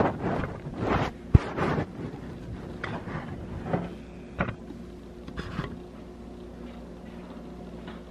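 Handling noise from the hidden camera being set in place: rustling and bumping against the camera, with one sharp knock about a second in. A few fainter knocks follow, and after about six seconds only a steady low hum remains.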